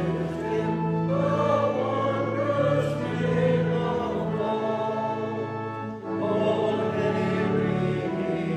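A choir singing a slow hymn in sustained chords, the notes changing every second or so, with a short break between lines about six seconds in.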